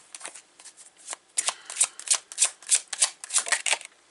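A tarot deck being shuffled by hand: a run of quick card flicks and slaps, sparse at first and then fast and steady from about a second and a half in.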